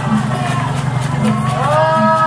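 Danjiri festival music: steady drumming with regular gong and bell strikes. About one and a half seconds in, a long drawn-out voice call rises and is held.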